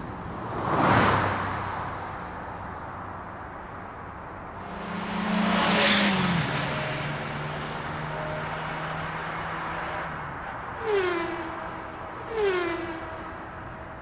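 Motion-graphics sound effects for an animated logo outro: a whoosh about a second in, a bigger swell that peaks around six seconds and settles into a low steady tone, then two short downward-gliding tones near the end.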